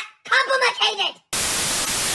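A cartoon voice makes short, wordless, strained vocal sounds, then about a second and a half in a loud burst of TV-static white noise cuts in suddenly and holds steady.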